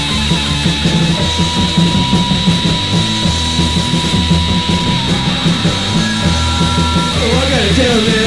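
Loud garage punk rock band playing an instrumental passage with distorted electric guitar. A lead line holds a long high note for several seconds, then a higher one about six seconds in, and a wavering, bending pitch comes near the end.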